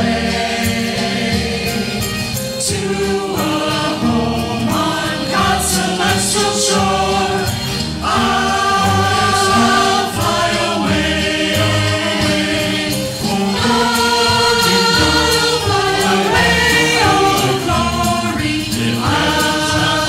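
Church choir singing a sacred piece, with notes held and changing in steady succession.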